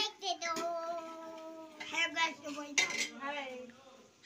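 A voice singing, holding one long steady note and then going on in a few shorter phrases.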